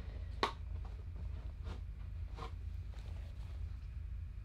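A steady low hum with three short rustling clicks, the loudest about half a second in.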